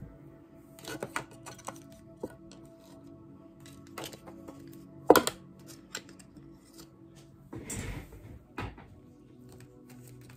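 Soft background music runs under a few sharp knocks and clatters of thin wooden card stands being set down and moved on a cloth-covered table. The loudest knock comes about five seconds in, with a longer rustle near eight seconds.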